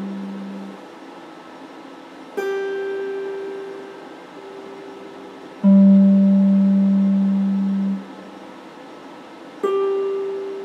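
Solid-body electric guitar played in slow, single plucked notes, each left to ring and fade: one about two and a half seconds in, a lower, louder one about six seconds in that is cut off sharply near the eight-second mark, and another just before the end.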